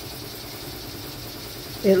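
Embroidery machine stitching in the background: a steady, faint mechanical hum.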